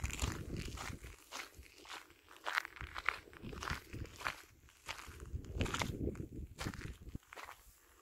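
Footsteps crunching on a dirt-and-gravel path at a steady walking pace, one step roughly every half to two-thirds of a second.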